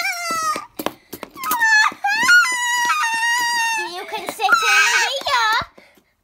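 A person's voice putting on a long, drawn-out wail of crying, acted tantrum crying for a doll character being refused a toy. A few sharp clicks about a second in.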